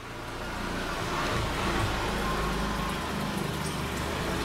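Steady rushing noise with a low hum underneath, fading in over the first second.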